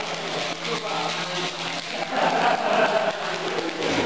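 Several people talking and calling out at once, with a steady low hum underneath.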